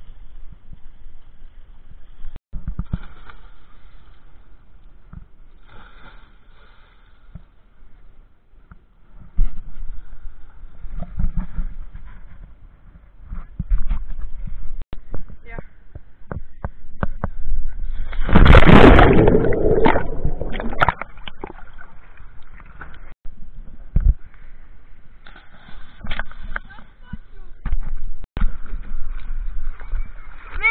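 Children jumping off a concrete quay into the sea: a big splash a little past the middle is the loudest sound, with smaller splashes, sharp knocks and children's voices around it.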